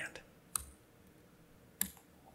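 Two short, sharp clicks from a computer's keys or mouse, one about half a second in and one near the end, with a low background between them.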